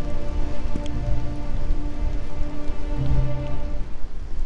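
Slow background music with long held notes, over loud, steady noise of rain and wind on the microphone.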